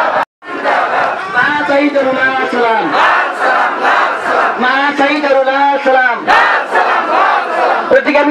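A crowd of marching protesters shouting political slogans together, loud throughout. The sound cuts out for a moment just after the start, then the shouting resumes.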